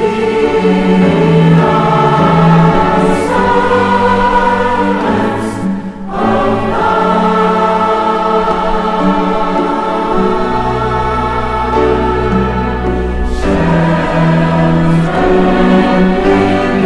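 Mixed choir singing in long held notes with chamber orchestra accompaniment, the voices breaking briefly between phrases about six seconds in.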